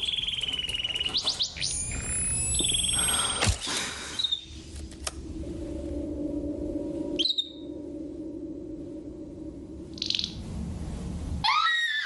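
A pet canary trilling and chirping in agitated bursts, most at the start and again near the end. Under it, an eerie low sustained drone of film score.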